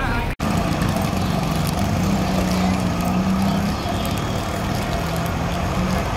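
Outdoor street noise with a steady low hum and voices in the background. The sound drops out abruptly for an instant about half a second in.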